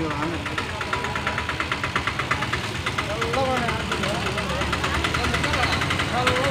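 A vehicle engine idling, with a fast, even ticking that is plainest in the first half. Voices talk in the background.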